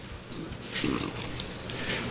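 Low, indistinct murmur of voices in a church hall, with a short breath into a close handheld microphone near the end.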